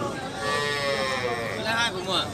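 A cow mooing once, a drawn-out call of about a second that falls slightly in pitch, with men's voices talking near the end.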